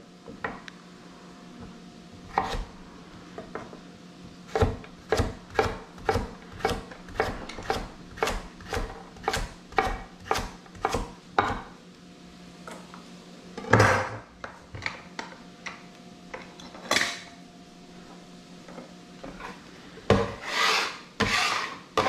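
Chef's knife chopping carrot on a wooden cutting board: a steady run of cuts about twice a second, then a few scattered cuts, and a couple of longer scraping strokes across the board near the end.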